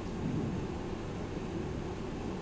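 Steady low rumble and hiss of background room noise picked up by the microphone, with no distinct events.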